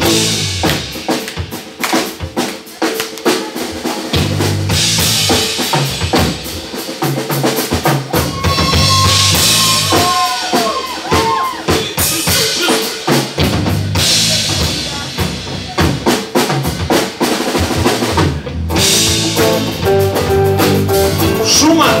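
Drum kit played live as a feature for the drummer: fast snare, tom and bass-drum hits, with cymbal crashes that swell up and die back several times.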